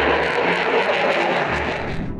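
F-22 Raptor's twin Pratt & Whitney F119 afterburning turbofans heard as a loud, steady rush of jet noise as the fighter flies past in afterburner.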